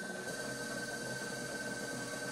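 Electric pottery wheel spinning while a trimming tool shaves leather-hard clay from the foot of an upturned plate: a faint, steady hiss with a thin high whine.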